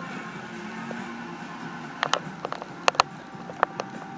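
A faint steady low hum, then a quick run of sharp clicks and taps over the last two seconds: handling noise from the recording phone being gripped and fumbled as recording ends.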